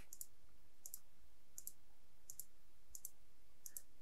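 Computer mouse clicking: six pairs of quick, sharp clicks, about one pair every 0.7 seconds, as an on-screen switch is toggled on and off.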